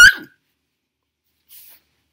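A single short, high-pitched yelp right at the start, rising slightly in pitch as it ends, like a small animal's bark.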